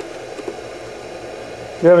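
Steady background hiss of room noise with no distinct events, then a man's voice begins near the end.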